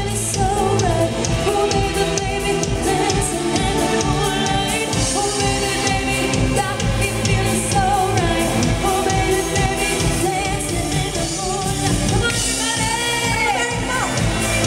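A live pop band playing: two women singing lead over keyboard, electric guitar and drums, with a steady drumbeat throughout.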